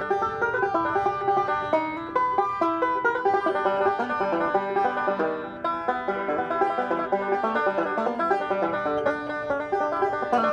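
Five-string banjo played solo, a fast unbroken run of plucked notes in a bluegrass style.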